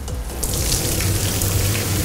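Hot, steaming liquid and mush pouring from a pot into a stainless steel perforated colander and splashing through into a sink: a steady rushing pour that starts about half a second in.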